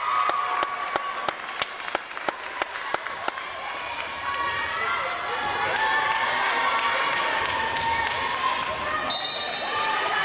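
Reverberant gym with a quick run of sharp claps, about three a second, for the first three seconds or so. Voices of players and spectators follow. Near the end a referee's whistle blows once, briefly, at one steady pitch: the signal for the serve.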